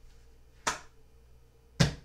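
Two short, sharp snaps about a second apart as tarot cards are handled and laid out.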